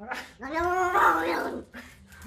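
Domestic cat yowling: one drawn-out call, rising and then falling in pitch, starting about half a second in.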